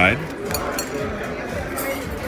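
Restaurant dining-room background chatter with a few light clinks of tableware, about half a second in and again near the end.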